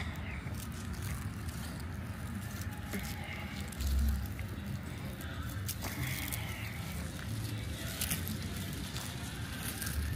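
Outdoor background: a steady low rumble, with one brief low thump about four seconds in and faint scattered clicks.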